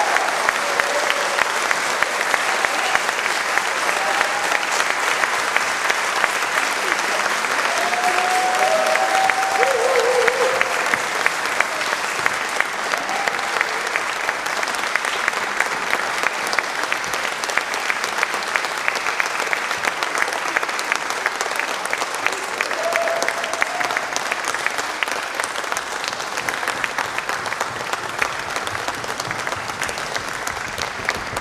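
Concert audience applauding, a dense steady clapping that eases slightly toward the end, with a few brief calls from the crowd among it.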